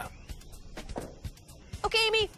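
Faint quiet background with a few soft ticks, then near the end a brief high-pitched vocal call, one short syllable whose pitch bends.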